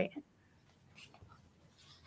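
The last syllable of a woman's speech, then a pause that is almost silent, broken by a faint brief noise about a second in.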